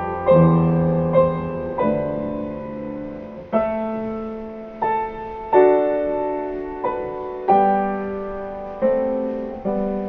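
Piano playing a slow piece in full chords, a new chord struck about once every second and left to ring and fade before the next.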